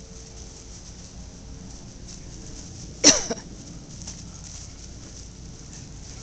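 A golden retriever gives a single short bark about three seconds in, during play.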